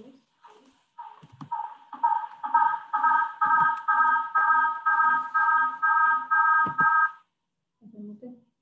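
Electronic soundtrack of a short video played into an online meeting, heard over the call: a chord of three steady tones pulsing about twice a second, with a low beat between the pulses. It builds over the first couple of seconds and cuts off about seven seconds in.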